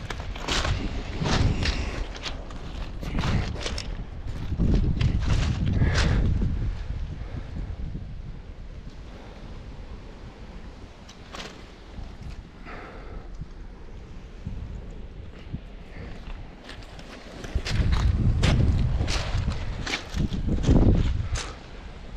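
Footsteps crunching on a shingle beach of loose pebbles, in uneven runs with a quieter stretch in the middle, over wind rumbling on the microphone.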